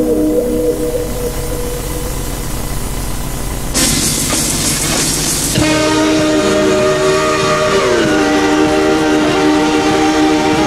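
A passing train: a low rumble, then a loud rushing hiss about four seconds in, then the train's horn sounding a steady chord whose pitch drops a little past the middle as the train goes by.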